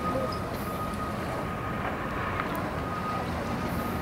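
Outboard motor idling steadily at low speed, a low hum with a thin steady whine over it.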